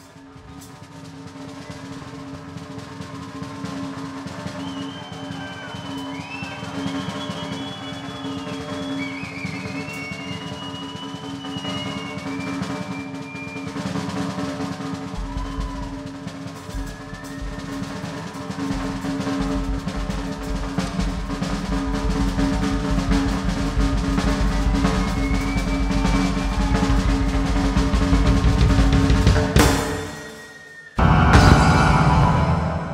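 Live rock band playing an instrumental build: a snare drum roll under a steady keyboard drone, swelling steadily louder, with high gliding notes in the first half and deep bass coming in about halfway through. It is the drum-roll build-up to the song's mock firing-squad execution, and it cuts off abruptly at the end.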